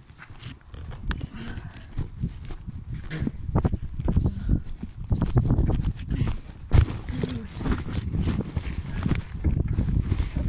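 Wind buffeting and handling noise on a phone microphone carried while cycling: an uneven low rumble with scattered knocks and rattles, the sharpest knock a little before seven seconds in.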